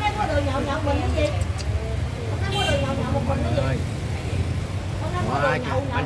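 People talking in short stretches over a steady low rumble.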